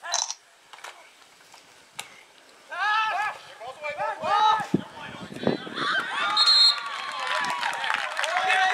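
Many voices of players and onlookers shouting and cheering during a football play, starting after a couple of quiet seconds. A referee's whistle sounds briefly about six seconds in, amid a long held shout.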